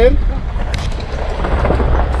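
Car driving slowly on a gravel forest road, heard from inside the cabin: a steady low rumble of tyres on gravel and engine, with a single knock a little under a second in.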